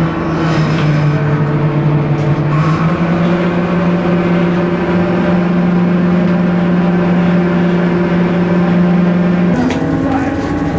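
Steady drone of a fishing trawler's engine and machinery, heard inside the wheelhouse. Its pitch steps up slightly about three seconds in.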